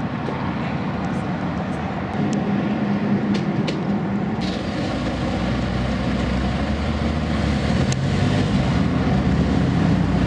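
A car engine idling nearby. Its low rumble deepens and grows somewhat louder about halfway through, with a few light clicks on top.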